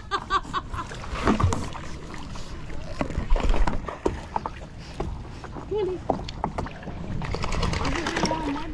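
A wet dog being hauled out of the river onto an inflatable paddleboard: water splashing and dripping, with irregular knocks and scrapes of paws and body on the board. Near the end the dog shakes off, spraying water.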